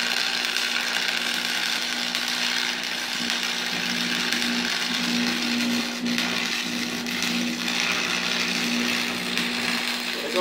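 Electric arc welding on steel exhaust pipe: a steady, unbroken sizzling arc noise with a low hum underneath.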